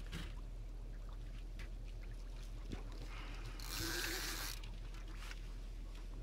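Water lapping and trickling against the side of a small boat, with small scattered ticks over a faint steady low hum. A brief hissing rush about three and a half seconds in.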